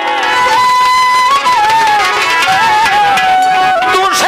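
Instrumental passage of Bengali Baul folk music: a single melody instrument plays a held, stepping tune over steady drum strokes, between sung verses.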